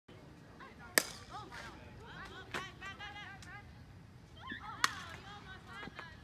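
A softball bat hits a pitched ball with a single sharp crack about a second in. A second sharp smack comes near the five-second mark.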